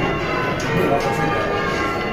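Church bells being rung in changes, several bells striking in turn with their ringing tones overlapping, heard from the ringing room below the bells.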